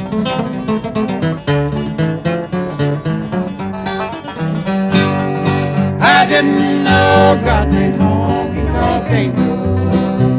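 Live bluegrass band with acoustic guitar picking a lead break over plucked upright bass notes. Singing comes in about six seconds in.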